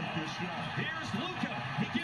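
Basketball TV broadcast playing in the background: arena crowd noise with a commentator's voice, quieter than the close voice around it.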